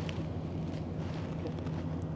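Distant heavy earthmoving machinery running, heard as a steady low engine hum over open-air noise.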